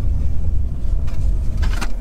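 Car rolling slowly along a gravel road, heard from inside the cabin: a steady low rumble, with a few sharp clicks about a second and a half in.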